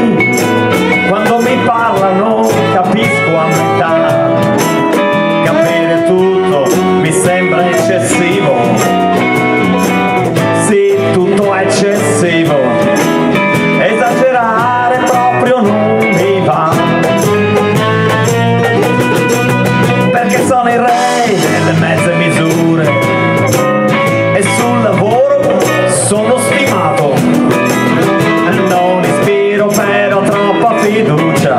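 Live band music: guitars, bass and cajón playing a blues-tinged song together.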